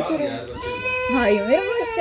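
A toddler girl crying in one long, held wail.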